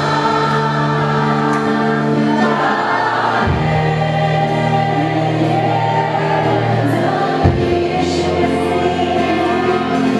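A Christian worship song sung by many voices together over a band, with held keyboard chords and a bass note that changes about every four seconds.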